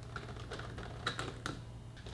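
A few light, sharp plastic clicks and taps as a power plug is handled and pushed into a Wi-Fi smart plug on a power strip, several coming close together about a second in, over a faint steady low hum.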